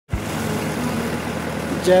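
Boat engine running steadily with a low, even hum as the boat crosses open water; a man's voice comes in at the very end.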